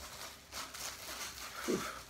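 Plastic shrink wrap on a vinyl LP jacket rustling faintly as it is peeled off by hand, with a short falling voice sound that is not a word near the end.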